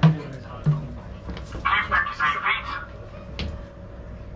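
Voices in a cramped metal compartment over a steady faint hum, with a louder stretch of talking in the middle and a single sharp click near the end.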